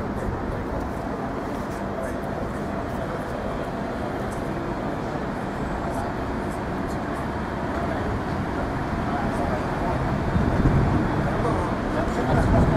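Street sound of people's voices and steady vehicle noise, growing into a louder low rumble over the last two seconds.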